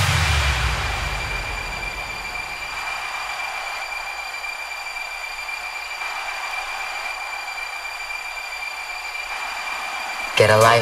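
Breakdown in a bounce/hard dance DJ mix: a synthesised white-noise wash with a thin steady high tone and no beat. A low bass drone dies away in the first second, and the wash fades slowly before swelling slightly near the end.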